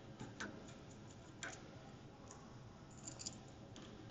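Faint small clicks and taps of precision repair tools against the parts of an opened iPhone 6: a couple near the start, one around the middle, and a short cluster near the end.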